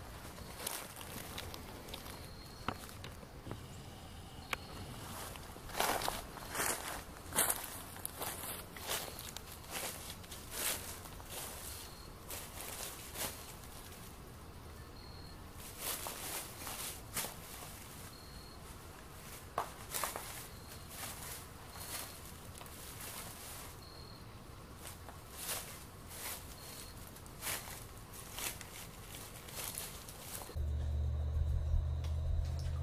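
A person's footsteps, walking in uneven runs with short pauses between.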